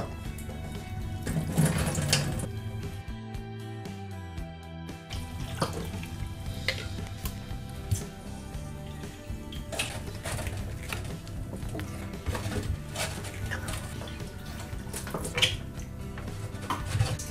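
Background music over tap water running into bottles and a thermos in a steel sink, with occasional clinks and knocks of the containers and their caps.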